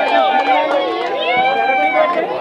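A crowd of people talking, laughing and calling out over one another, with some hand clapping.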